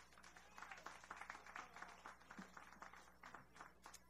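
Faint audience applause: many scattered hand claps, thin and distant.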